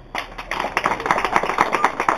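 A small group of people clapping, a quick irregular patter of handclaps that starts a moment after the music has faded and keeps going.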